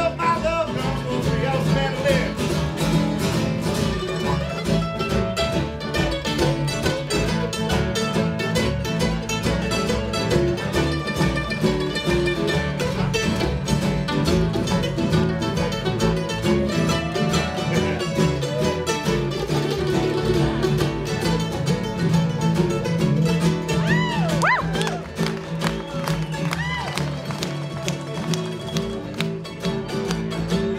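Live acoustic band playing: picked and strummed acoustic guitars and a mandolin, with a fiddle, in a busy, steady ensemble, with a few sliding notes a little before the end.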